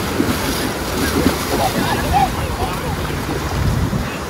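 Small surf waves washing through shallow water, with wind rumbling on the microphone.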